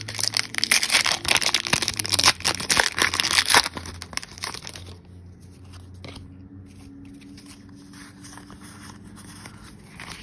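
Foil booster-pack wrapper being torn open and crinkled in the hands, a dense crackling for about the first three and a half seconds. Then it drops to faint scattered rustles over a low hum.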